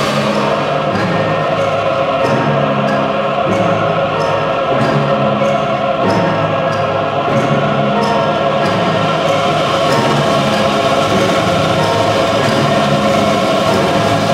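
Choir and symphony orchestra holding a loud, sustained maestoso chord passage from an oratorio, with evenly spaced percussion strokes about twice a second.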